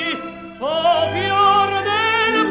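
Operatic tenor singing with orchestra on a 1930s recording: a held note fades, and after a brief dip a new note slides up into place about half a second in and is held with a wide vibrato.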